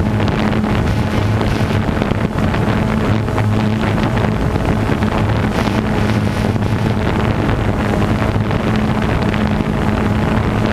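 A motor running steadily with a low, even drone, mixed with wind buffeting the microphone.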